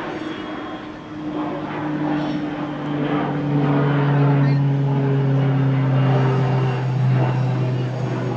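An engine droning as it passes, a steady hum that swells to its loudest midway, sinking slightly in pitch, and eases off near the end.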